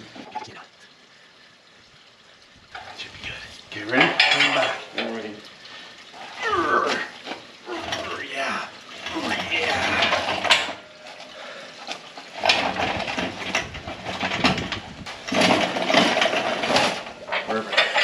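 Metal clinking and rattling from the chains and steel frame of a loaded engine crane as it moves a hanging cast-iron V8 and transmission, with a scraping rumble between the clanks. It is quiet for the first two seconds or so, then the clatter keeps coming in bursts.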